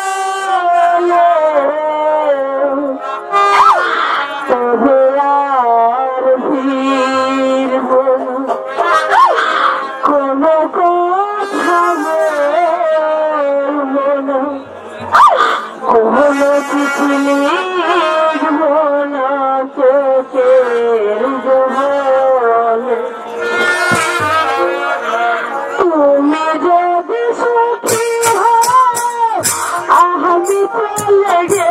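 A woman singing a slow Bengali jatra song of separation into a stage microphone, holding long wavering notes, with a wind instrument accompanying the melody. Near the end, quick sharp percussion strokes come in.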